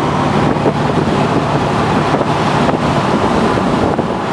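Inside the cabin of a moving 1975 Corvette convertible: its ZZ4 350 small-block V8 crate engine running steadily under wind and road noise, with wind buffeting the microphone.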